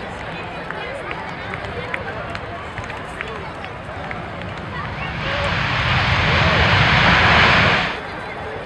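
Jet engines of a Boeing C-17 Globemaster III, four turbofans, rising to a loud rushing roar over the last three seconds, loudest near the end and then cutting off abruptly. Crowd chatter runs underneath.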